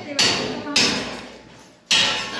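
Two sharp hammer blows about half a second apart, each ringing out and fading, the second dying away slowly.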